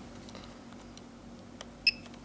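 A single short beep from the Turnigy 9XR transmitter as one of its menu buttons is pressed, near the end, just after a faint click; otherwise low room noise.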